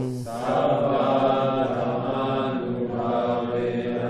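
A group of people chanting a line of the Pali blessing chant together in unison, repeating it after the leader; many voices blend into a slightly blurred drone.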